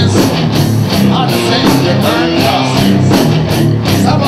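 Live rock band playing loudly, with electric guitar, drums keeping a steady beat and a male lead singer.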